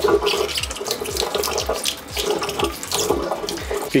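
Tap water running into an enamel sink while a toothbrush scrubs a small acrylic aquarium skimmer part under the stream, giving scratchy brushing and light plastic clicks over the flow, which dips briefly about halfway.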